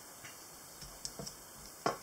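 Wooden chopsticks tapping lightly against a ceramic dipping bowl and plate: a few faint, irregular clicks.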